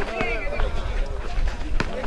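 Several voices of players and spectators calling out at once around an outdoor basketball game, with a few sharp knocks from the play on the concrete court. A steady low rumble of wind on the microphone sits underneath.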